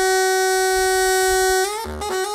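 Long bamboo pipe played solo: one long held note, then about three quarters of the way in it slides into a run of shorter notes.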